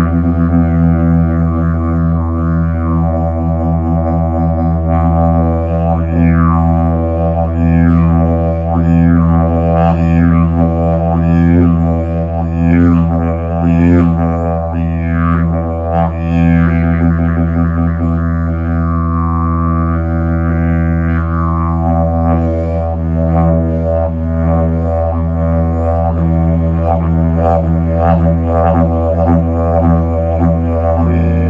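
Hemp didgeridoo in the key of E, droning without a break on a low steady fundamental. Its overtones sweep up and down in a rhythmic pattern as the player shapes the sound with mouth and tongue.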